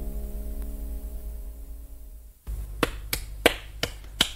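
A held piano chord fading away at the end of a piece. It stops abruptly about two and a half seconds in, and a run of sharp clicks or taps follows, about two or three a second.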